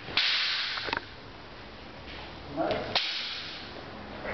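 Wooden practice swords clashing in sparring: two sharp clacks about two seconds apart, the first near one second in, each joined to a loud rush of noise, with a short vocal sound just before the second clack.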